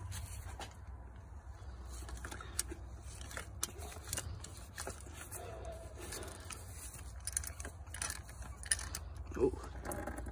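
Scattered metal clicks and clinks of hand tools as a Toyota cap-type oil filter wrench on an extension bar is worked onto the oil filter, with a low steady hum underneath.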